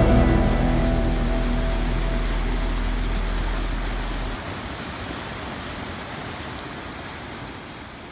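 Waterfall and the rapids below it rushing, a steady noise that slowly fades out. The last notes of background music die away in the first second, and a low hum stops about halfway through.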